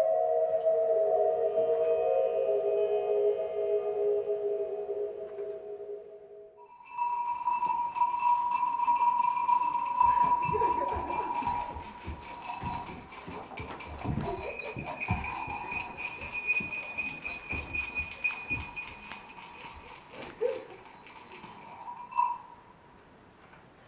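Live electro-acoustic experimental music. A cluster of sustained, slowly sinking tones fades out over the first six seconds. About seven seconds in, a steady high whistling tone with crackling clicks takes over, with scattered irregular thumps through the middle.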